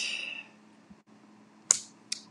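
A short lull with faint room tone, broken near the end by one sharp, high-pitched click that dies away quickly.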